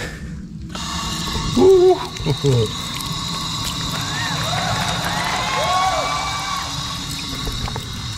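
Stainless-steel push-button drinking fountain working: its water jet runs and splashes into the metal bowl, starting about a second in and stopping just before the end, while someone drinks from it.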